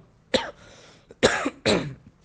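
A man coughing three times: one short cough, then two more close together in the second half.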